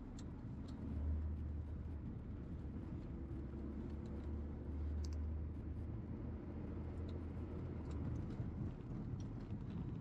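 Car driving slowly, heard from inside the cabin: a steady low engine and road hum that grows stronger about a second in and eases near the end.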